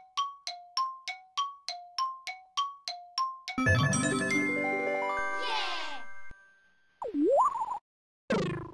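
Cartoon chime sound effects. It opens with a rapid run of bright plinks, about three to four a second alternating between two pitches, like tiptoeing steps. About three and a half seconds in this gives way to a held, shimmering chord with a falling sparkle that cuts off suddenly, and near the end a short tone swoops down and back up.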